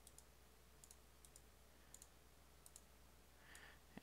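Near silence: room tone with several faint, scattered computer mouse clicks.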